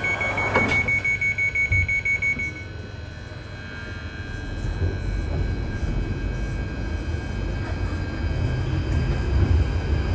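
London Underground Northern Line train's door-closing warning, a rapid run of high beeps that stops about two and a half seconds in as the doors shut, then the train's low rumble building as it pulls away from the platform.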